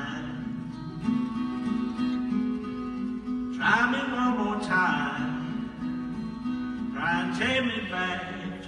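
Acoustic blues guitar playing an instrumental passage between verses, with louder phrases starting a little over three and a half seconds in and again about seven seconds in.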